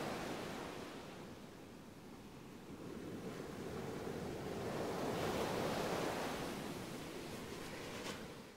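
A soft rushing noise of wind and water. It dips about two seconds in, swells again around five to six seconds, then eases off.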